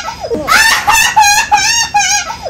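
Chicken-like cackling: a quick downward squawk followed by a run of short, high, evenly spaced clucking notes, loud.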